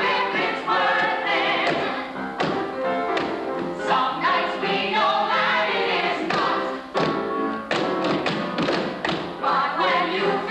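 A mixed ensemble of men and women singing together in a musical-theatre show tune, with sharp taps or thumps in among the singing.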